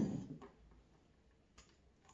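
A vanity cabinet drawer sliding shut on its runners and bumping closed right at the start, followed by two or three faint clicks.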